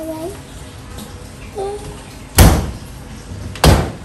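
Aluminium-framed glass cabinet door banged shut twice, two loud bangs a little over a second apart in the second half, with a short child's voice sound before them.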